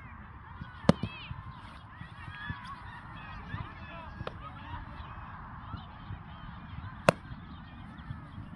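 A flock of birds calls continuously in the background. Two sharp smacks, about a second in and near the end, are a ball landing in a youth catcher's mitt.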